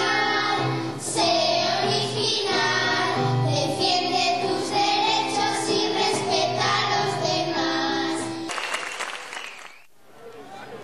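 A group of children singing a song together over musical accompaniment. The song breaks off about eight and a half seconds in, and a short noisy stretch after it fades away.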